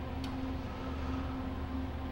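Steady low electrical hum of an idling wire EDM machine, with one faint click about a quarter second in.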